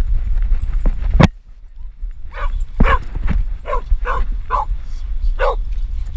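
A dog barking about seven times in quick succession, starting about two seconds in. Before the barks, a steady low rumble and one sharp knock about a second in, from the camera riding on a moving dog.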